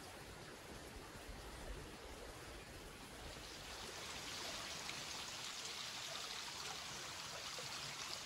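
Faint, steady rush of a small creek's flowing water, a little louder from about halfway through.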